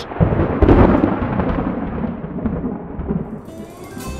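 Thunder sound effect: a sudden low rumble that is loudest about half a second in and then dies away over the next few seconds. Music comes in near the end.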